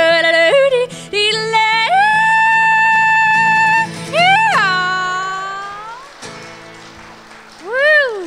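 A woman yodeling to her own acoustic guitar: quick yodel flips between low and high notes, then a long held high note, a swooping final yodel about four seconds in, and the last guitar chord ringing out and fading. A short rising-and-falling vocal swoop comes near the end.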